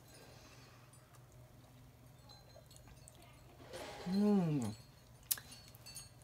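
A woman's short hummed "mmm" of approval, about four seconds in, while tasting a drink, then a single sharp click; otherwise a quiet room.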